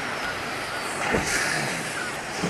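Steady rush of sea water around a small boat, with a brief splash about a second in.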